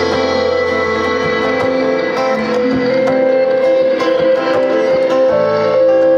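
Live rock band playing an instrumental song intro, with sustained keyboard chords and electric and acoustic guitars over light drum hits.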